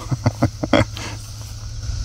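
A man's brief laughter, a few short breathy bursts in the first second, then dying away.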